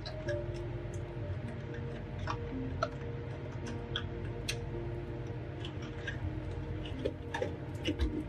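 Scattered light clicks and taps of clear plastic cake-box panels being handled while a cake is packed, over soft background music.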